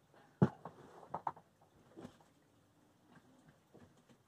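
A person getting up from an office chair and moving off: one knock about half a second in, then a few lighter clicks and taps that thin out to faint ticks.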